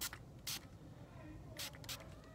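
Small pump spray bottle spraying alcohol-based sanitizer onto a clarinet reed: two short sprays about a second apart.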